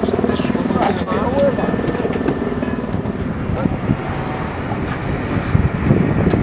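Indistinct voices over a steady, engine-like rumble.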